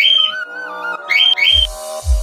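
Parrot chirps and whistles edited to follow the vocal melody of a song, over its electronic backing track. A wavering whistle opens, two short chirps come about a second in, and a deep kick drum beat enters about halfway through.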